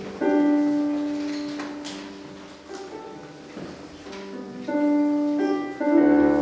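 Electric keyboard in a piano voice playing slow, held chords, each struck and left to fade before the next, about every two seconds: the instrumental introduction to a worship song, before the singing starts.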